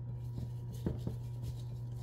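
A few light clicks and taps as a cockatoo rummages with its beak among plastic toys in a bin, over a steady low hum.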